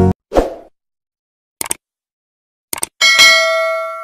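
Subscribe-button animation sound effects: a short soft hit, two quick double clicks like a mouse button about a second apart, then a bright bell ding that rings and fades away.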